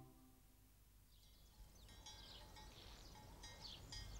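The last chord of an unaccompanied vocal quartet fades out at the start. Then there is near silence, with faint bird chirps starting about a second in.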